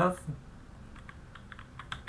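Computer keyboard typing: a few light key clicks in quick succession in the second half, as a command is typed into a terminal.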